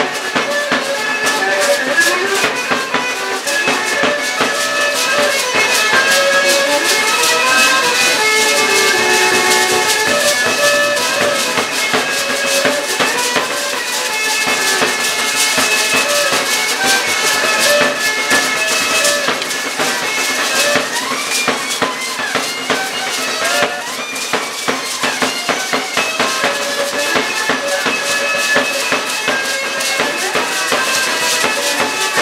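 Live music for a Mexican danza de pluma: a continuous reedy melody over a steady drum beat, with the dancers' hand-held rattles shaking in time.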